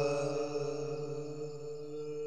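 The sustained backing drone of a noha lament holding one steady pitch and slowly fading out as the song ends.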